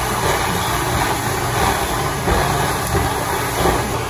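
Plush-toy stuffing machine's blower running steadily as it blows fluffy stuffing into a bear held at its nozzle.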